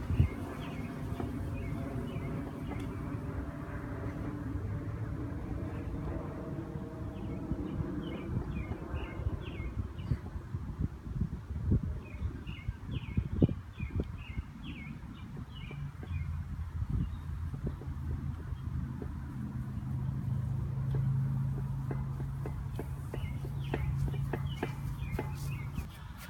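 Birds chirping in short scattered bursts over a low, steady background rumble, with occasional faint knocks.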